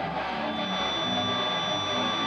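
Live punk-rock electric guitar playing held, ringing chords in a song's intro, without drums. A thin steady high tone sits above it from about half a second in.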